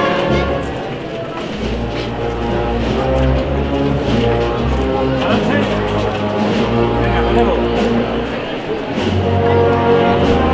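Wind band (banda de música) playing a Holy Week processional march, with sustained brass chords over low bass notes. Crowd voices talk underneath.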